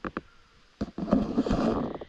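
Camera handling noise: a few sharp clicks, then about a second of rustling and scraping as the camera is swung around and gripped.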